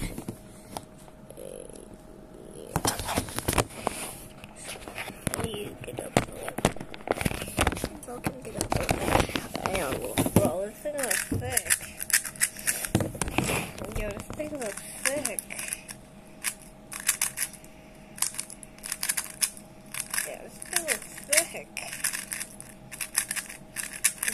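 A hollow-frame plastic 3x3 puzzle cube being turned by hand: quick runs of plastic clicks and rattles as its layers are twisted.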